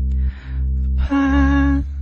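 Korean pop ballad: a male voice holds one sung note with vibrato about halfway through, over a steady low accompaniment.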